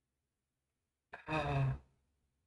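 A man's short voiced sigh, a little over a second in, lasting under a second.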